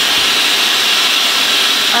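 Dyson Supersonic hair dryer with its concentrator nozzle running at highest speed and heat, a loud steady rush of air with a high-pitched edge.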